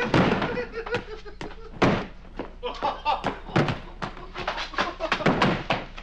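A man's voice laughing, mixed with repeated thunks and knocks and a heavy wooden door banging.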